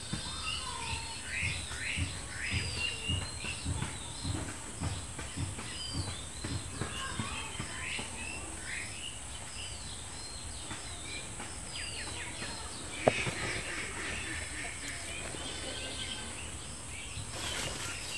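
Small birds chirping and calling in the background, a steady run of short rising and falling chirps. There are soft low knocks through the first half and one sharp click about 13 seconds in.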